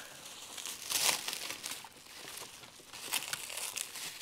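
Clear plastic wrapping around a sphagnum-moss air layer crinkling as hands grip and work at it, in uneven rustles that are loudest about a second in.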